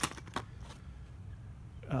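Stiff plastic blister packaging of oscillating multitool blades being handled, with a few sharp clicks in the first half-second and faint crackling after.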